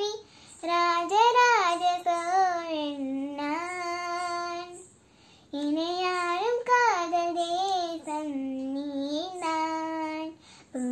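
A young girl singing a Tamil song unaccompanied, in two long phrases with a short pause for breath about halfway through.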